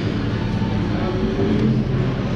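Background chatter of many people in a busy buffet restaurant, over a steady low rumble.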